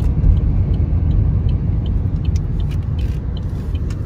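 Car cabin noise while driving: a steady low rumble of road and engine noise heard from inside the moving car.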